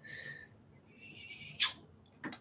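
A paintbrush rubbing over the canvas in two short, scratchy strokes as wet paint is smeared in, followed by a short sharp click near the end.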